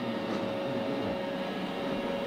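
iRobot Roomba j7+ robot vacuum running on a rug: a steady whirr of its motor and brushes with a constant high whine.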